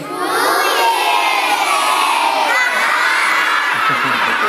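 A group of young children shouting and cheering together, many high voices overlapping for about four seconds.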